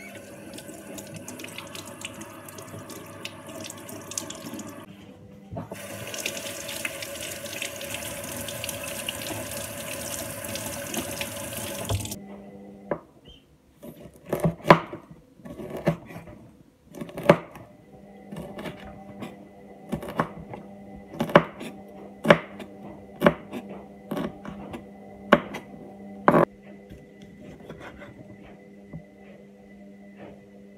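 Kitchen tap running into a sink as a chef's knife and chillies are rinsed; the stream dips briefly, runs louder from about six seconds in and shuts off about twelve seconds in. Then a chef's knife cutting a tomato on a wooden cutting board, sharp knocks about once a second. A steady low hum of a running washing machine lies underneath.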